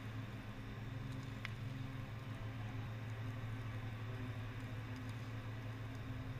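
Ember generator running, casting a shower of burning firebrands: a steady low machine hum over a constant rushing hiss, with a faint tick about one and a half seconds in.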